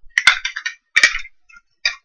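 Plastic wrapping of a 5 Surprise Mini Brands capsule crinkling as it is pulled open by hand, in short crackly bursts with sharp clicks near the start and about a second in.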